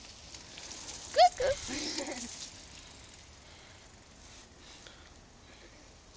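A person's short vocal cry with a sharply rising pitch about a second in, followed by a few weaker voice sounds and a brief rustle; then only faint outdoor background.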